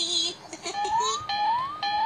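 High-pitched cartoon voice of the Nick Jr. Face character: a short held sung syllable, then three quick upward-sliding vocal glides about half a second apart.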